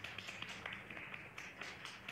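A small group of people clapping: faint, quick, overlapping hand claps.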